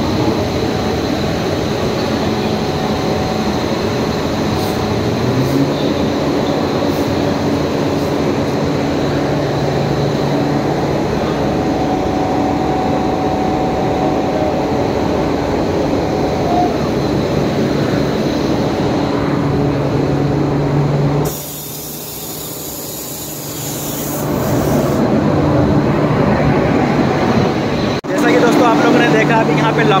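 A locomotive coupled to the train runs steadily close by, with a low hum that strengthens about five seconds in. About two-thirds of the way through there are a few seconds of high hiss.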